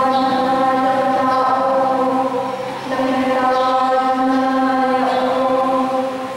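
A woman's voice chanting a sung part of the Catholic Mass into a microphone, in long held notes of a few seconds each with a brief break about three seconds in.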